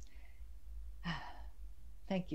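A woman's soft, breathy sigh about a second in, over a faint steady low hum.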